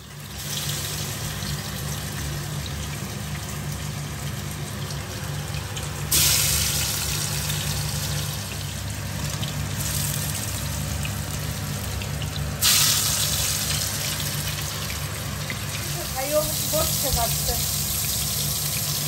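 Fish steaks and aubergine slices sizzling as they shallow-fry in oil: a steady hiss over a low hum, which jumps suddenly louder about six seconds in and again about thirteen seconds in.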